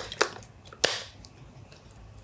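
A few short plastic clicks from a Canon camera being handled, the loudest a little under a second in: the battery being put in and the battery compartment door snapped shut.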